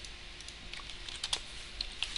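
Computer keyboard keystrokes: a few faint, scattered taps, with one sharper click a little past halfway.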